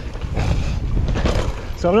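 Mountain bike rolling along a dry dirt trail: a steady rushing of tyre and wind noise on the camera microphone, with a couple of knocks from the bike over the ground. A man starts speaking at the very end.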